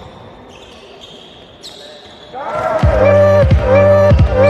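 Live game sound of basketball in a sports hall, with the ball bouncing and players' voices, during a break in the backing music. About two and a half seconds in, electronic music fades back in with a rising synth sweep, then a steady beat with a wobbling synth line.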